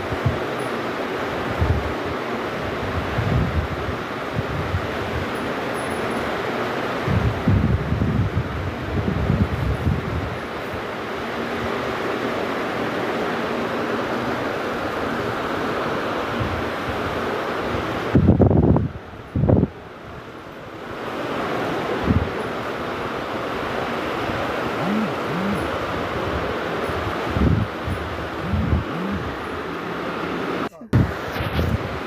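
Wind buffeting the microphone outdoors in repeated low gusts over a steady hiss, with the strongest gusts about two-thirds of the way through.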